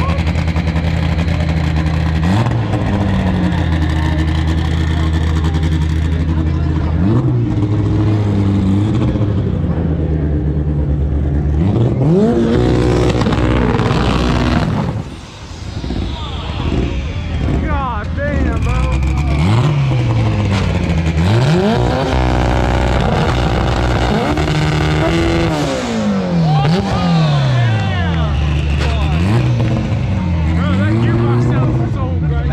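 A drag car's engine revving over and over, held at a steady speed for several seconds at a time between quick rises and falls in pitch, over crowd noise.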